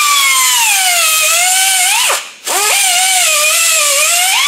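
Air-powered cut-off wheel whining as it cuts through taped braided stainless steel fuel hose; the pitch sags under the load of the cut. It stops briefly about two seconds in, then spins up and cuts again.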